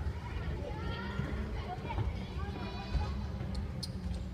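A steady low rumble with faint, indistinct voices in the background and a few small clicks near the end.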